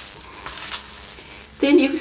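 Faint rustling and a few soft clicks of folded tissue paper being handled, with scissors nearby; a woman starts speaking near the end.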